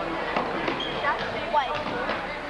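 Live basketball game sound in a gym: a ball bouncing on the hardwood, short squeaks of sneakers on the floor, and crowd voices.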